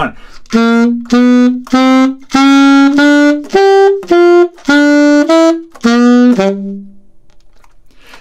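Alto saxophone playing a slow, detached phrase of about a dozen notes, one at a time with short gaps between them. It opens with notes climbing in small steps, jumps higher, then comes down to a low last note that fades out.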